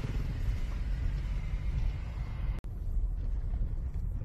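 Low, steady rumble of a car driving over a rough, potholed road, heard from inside the cabin. About two-thirds of the way through the sound drops out for an instant, then the rumble resumes.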